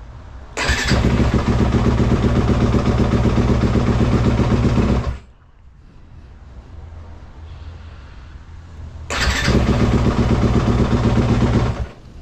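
2020 Yamaha YZ250F's 250 cc single-cylinder four-stroke engine fired on the electric starter twice. Each time it catches almost at once on the new lithium battery and runs steadily. The first run lasts about four and a half seconds before it stops, and the second starts about nine seconds in and runs to near the end.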